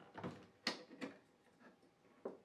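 A few faint plastic clicks, the loudest about two-thirds of a second in, as the knob connector on a Whirlpool Cabrio dryer's control board is twisted a quarter turn and unclipped.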